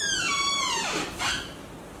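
A door's hinges squeak as it swings, one drawn-out squeal falling in pitch over about a second and a half.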